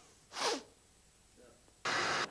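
A short, sharp burst of breath from a man about half a second in, then near silence, then a sudden burst of TV-static hiss near the end.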